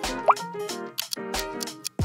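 Light background music with a steady beat, with a short rising blip sound effect about a third of a second in.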